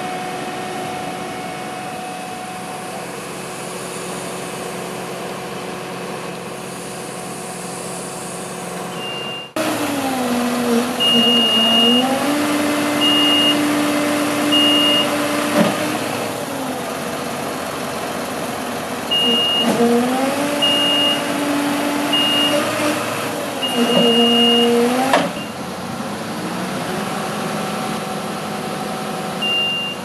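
Fire engine turntable-ladder truck: a steady hum, then from about a third of the way in its engine speeding up and slowing down in two spells, each time with a high warning beeper sounding in short repeated beeps.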